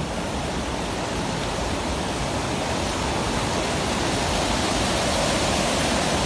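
Reservoir spillway overflowing, a steady rush of water that grows gradually louder.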